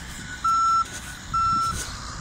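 Backup alarm on heavy earthmoving equipment: two steady, high-pitched beeps about a second apart, with engines running low underneath.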